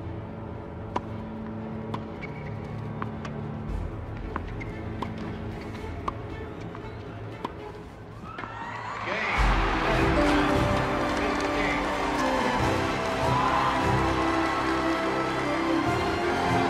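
Tennis rally, with sharp racket-on-ball hits about once a second over soft background music. About nine seconds in, a large crowd bursts into cheering, which stays loud with the music going on underneath.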